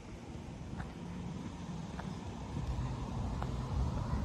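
Low rumble of a motor vehicle engine, growing louder toward the end, over outdoor background noise, with a few faint ticks about a second apart.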